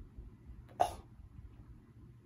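A man's single short, gagging 'oh' about a second in, a retching reaction to a drink he finds disgusting; otherwise faint room tone.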